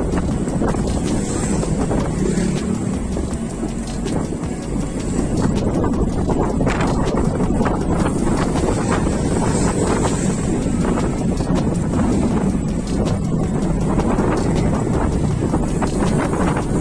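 Wind buffeting the microphone and road noise from a bicycle riding along a paved street, steady throughout, with many small clicks and knocks.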